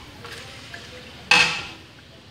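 A metal spatula clanks once against a wok a little past halfway, a sharp bright knock that rings briefly, over a low steady hiss of a rice cracker frying in hot oil.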